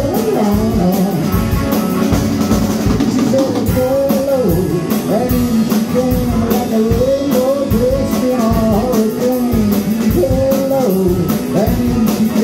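Live rock band playing: electric guitar and drum kit, with a melodic line bending up and down over a steady beat of drum and cymbal hits.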